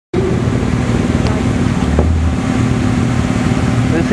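2014 Chevrolet Corvette Stingray's V8 idling as the car creeps past, a loud, steady low rumble.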